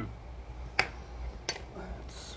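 Two sharp clicks, about two-thirds of a second apart, the first the louder, over a low steady room hum.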